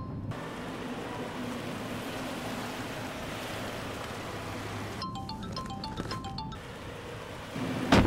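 Light background music: a short phrase of bright struck mallet-percussion notes, like a glockenspiel, about five seconds in, over a steady rushing noise.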